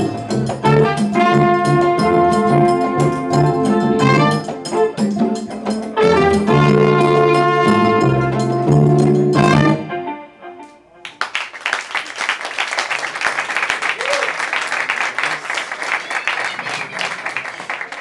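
Live band of congas, guitars and upright bass playing the closing bars of a tune and ending on a long held chord about ten seconds in, followed by audience applause.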